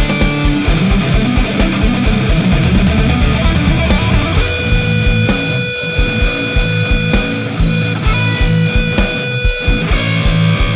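Heavy metal demo track: distorted electric guitar riffs played through the Audio Assault Shibalba amp-sim plugin over drums with a steady, fast kick-drum pulse. Long held guitar notes ring out from about halfway through.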